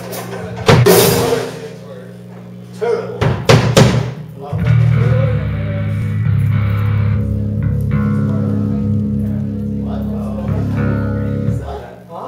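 Live rock band with electric guitar, bass and drum kit: a loud crash about a second in, a few more drum and cymbal hits a couple of seconds later, then a low guitar and bass chord held and ringing for about seven seconds before it is cut off near the end.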